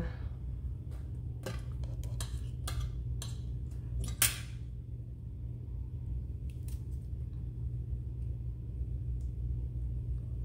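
Thin whiteboard tape being handled and pressed onto a slab of polymer clay on a hard worktop: scattered small clicks and taps, with a short louder rasp about four seconds in, over a steady low hum.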